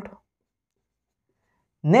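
A man's lecturing voice trails off at the start, then near silence for about a second and a half, and his speech starts again near the end.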